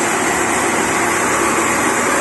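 Large band sawmill cutting through a merbau log: a steady, loud machine noise of the blade running through the wood with its drive engine.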